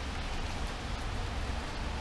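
Steady hiss of rain, with a low rumble underneath.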